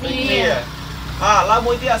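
Voices repeating the word "sun" aloud in a drill, over a steady low hum.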